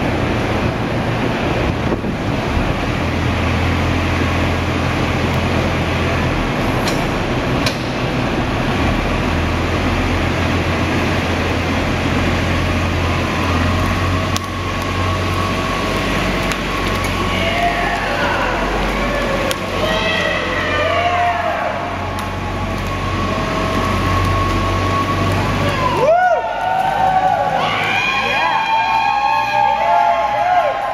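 Kubota utility vehicle's engine running steadily at low speed as it drives over a cardboard bridge, then a group of people shouting and cheering near the end.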